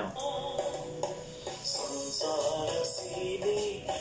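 A Sinhala pop song performed live, a male lead voice singing held notes over a band backing with bright percussion.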